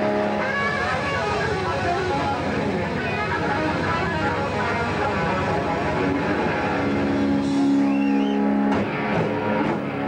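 Live blues-rock band playing loud electric guitars over bass and drums. A long held chord rings from about seven seconds in, with guitar string bends over it.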